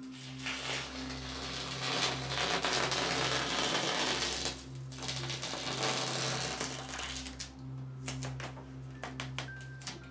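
Masking tape being peeled off a painted canvas: two long, dry tearing pulls of a few seconds each, then a handful of short clicks and rustles near the end.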